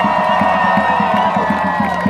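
Large crowd of student protesters cheering and whooping, many voices holding long shouts at once, dying down near the end.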